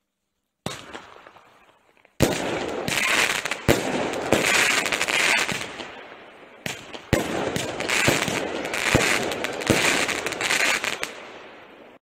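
The 'Hurricane' 8-shot firework barrage cake firing. A first shot comes under a second in. From about two seconds a loud bang starts a run of sharp reports over dense crackling, which fades out toward the end.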